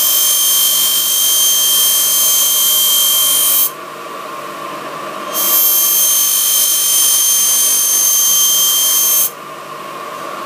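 A puukko knife blade being sharpened on a motor-driven lamella sharpening wheel: a steady grinding hiss with a high whine. The grinding drops away for about two seconds in the middle and again near the end, leaving the quieter running of the machine.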